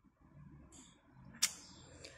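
Lips pressing and parting after liquid matte lipstick has been applied, with soft handling rustle and one sharp click or smack about one and a half seconds in.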